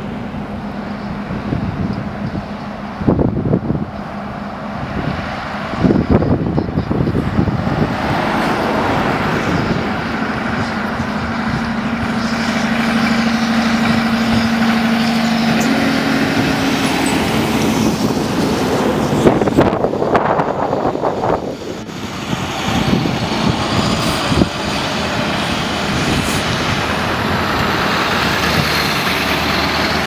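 Diesel semi-truck engine running under load as it tows a house on a low trailer, its steady drone growing as it nears and passes, with tyre and road noise. Further vehicles pass in the second half, one of them a pickup truck.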